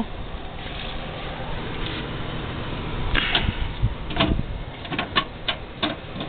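Steady background noise, then from about three seconds in a handful of short, sharp clicks and knocks, some about half a second apart.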